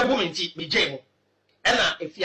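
A man speaking, with a break of about half a second in the middle.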